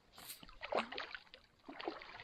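Water splashing at the stream's edge as a hooked trout is played in close to the landing net: two irregular bouts of splashing, the first starting just after the beginning and the second near the end.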